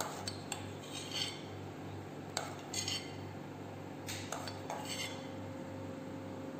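Metal spoons and forks clinking against plates, about ten light clinks scattered through, over a steady low hum.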